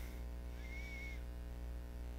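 Steady low electrical hum with evenly spaced overtones, and a faint short high tone about half a second in.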